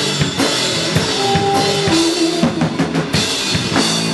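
A live indie rock band plays: a drum kit beat with kick and snare hits up front, over electric guitar and bass guitar.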